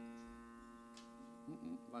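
Grand piano chord ringing out and slowly fading after the last sung note, with a faint click about a second in.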